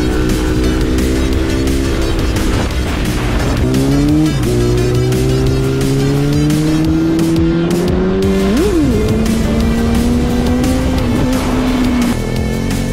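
Motorcycle engine pulling under acceleration: the revs climb, drop at a gear change about four seconds in and climb again, then a quick up-and-down rev blip near nine seconds before the engine holds a steady pitch.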